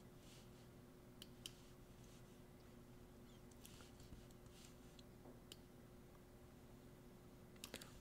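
Near silence with a few faint, scattered computer mouse clicks as a masking brush is painted on screen.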